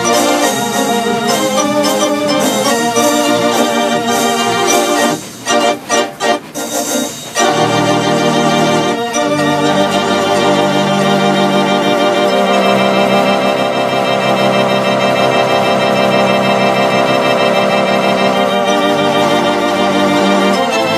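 Electronic theatre organ played through two loudspeaker cabinets, with full sustained chords over a bass line. About five seconds in it breaks into a few short, detached chords, then settles back into long held chords.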